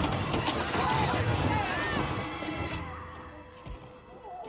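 Television drama soundtrack: a sudden loud rumbling crash, then screaming and shouting voices over music, dying away after about three seconds.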